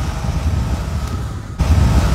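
Street traffic noise: a steady low rumble of passing cars, dipping slightly and then growing louder about one and a half seconds in.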